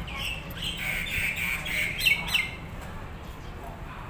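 Birds calling, a run of short chirps and squawks with two sharp downward-sliding calls, the loudest, about two seconds in.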